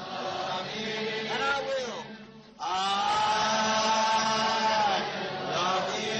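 Slow singing with long drawn-out notes. A short break comes about two seconds in, then a note is held for about two and a half seconds.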